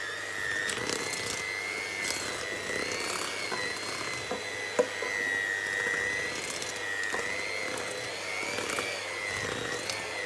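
Electric hand mixer running in stiff cookie dough in a stainless steel bowl. The motor gives a steady whine that wavers slightly in pitch as the beaters labour. Light clicks of the beaters against the bowl run through it, with one sharp knock about five seconds in.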